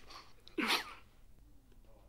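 A person's single short, breathy vocal burst about half a second in, over faint room tone.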